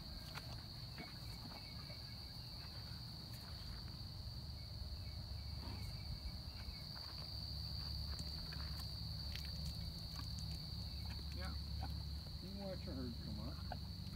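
A steady, high-pitched insect chorus drones without a break, over a low rumble on the microphone.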